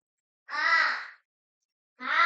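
A crow cawing once, a single call of under a second, with the next caw starting just at the end.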